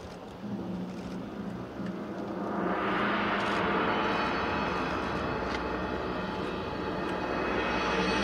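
Ensemble music with sustained, layered tones swelling in and growing steadily louder and brighter: the opening of the song's orchestral introduction, played over a large outdoor sound system.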